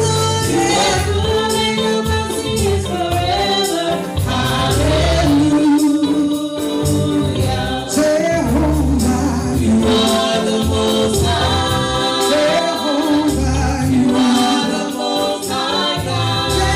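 Gospel praise team of several singers singing into microphones over live accompaniment with a steady low bass and a regular beat.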